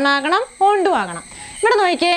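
A woman speaking in short phrases, with a steady, thin, high-pitched tone running underneath.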